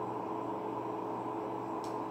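Steady low room hum with a faint hiss, and a faint click near the end as a deck of playing cards is picked up.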